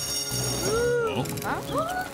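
Cartoon fire alarm bell ringing, cutting off about a second in, overlapped and followed by short rising-and-falling voice-like calls over background music.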